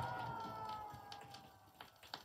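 The last notes of a song played from a vinyl single fade out, a held chord dying away. Sharp surface clicks from the record come through near the end.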